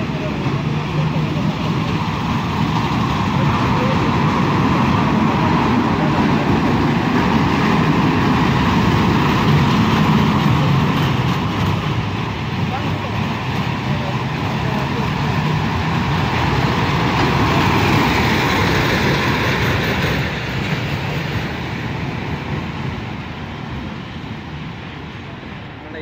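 Small dragon-themed kiddie roller coaster train running on its steel track, a steady rolling rumble of wheels on rail that swells toward the middle and eases off near the end, with voices around it.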